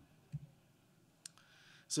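Faint room tone in a pause between spoken sentences, with a soft low bump about a third of a second in and one short, sharp click a little past a second in. A man's voice starts just at the end.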